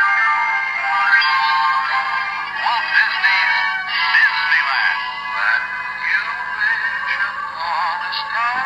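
A miniature TV-set Disneyland Christmas ornament playing its built-in vintage Disneyland advert through its tiny speaker: music with a singing voice. It sounds thin, with no bass.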